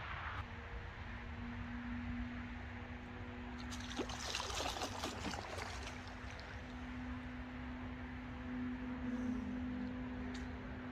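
A mirror carp of about 22 lb splashing in the shallow lake margin as it is released, a short burst of splashing about four seconds in lasting a second or two. A steady low hum and a low rumble run underneath.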